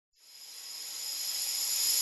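A rising swell of hiss with a few steady high tones, fading in from silence and growing louder: an intro riser sound effect building into the opening music.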